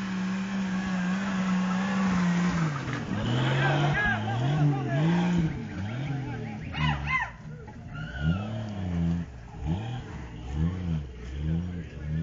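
Off-road Jeep engine held at steady high revs under load, then dropping and revving up and down again and again, the throttle blipped in quick rising-and-falling pulses as it crawls up a rocky climb.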